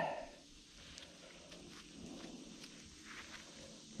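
Quiet outdoor background with faint rustling and a few soft clicks.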